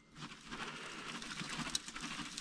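Shredded branch chips poured from a plastic bucket, pattering softly as a steady stream of small ticks as they fall into a small stove's opening; more spill around it than go in.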